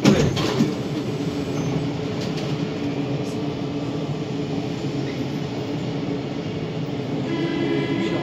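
Siemens/Matra VAL 208 metro train standing at a station, its onboard equipment humming steadily, with a sharp knock right at the start. Near the end a steady electronic tone begins and holds.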